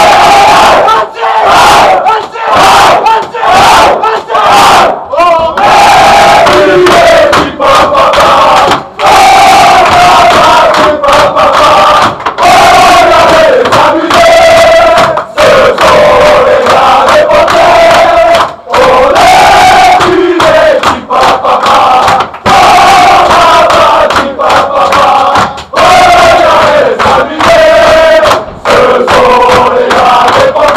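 A group of men chanting and singing together at the top of their voices in a small, echoing dressing room, with hand claps, in a victory celebration. It is very loud throughout.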